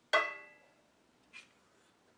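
An aerosol can of spray lubricant set down on a hard surface: one sharp metallic clink that rings briefly and fades. A faint short rustle follows a little over a second later.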